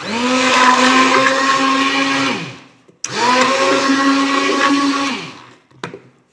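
Electric hand blender running in a steel bowl, blending gram flour and buttermilk into a smooth batter, in two runs of about two and a half seconds each; the motor's pitch drops as it winds down at the end of each run.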